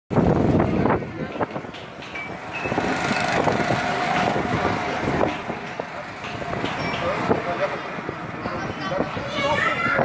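Go-karts running on a track, with people's voices talking over them. The sound is loudest in the first second.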